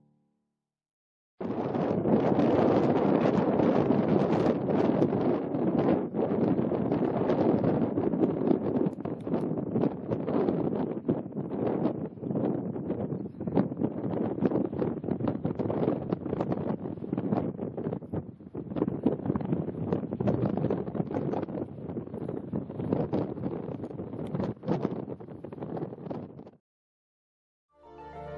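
Wind buffeting the camera microphone: a loud, rough rush that gusts up and down irregularly. It starts about a second and a half in, after a brief silence.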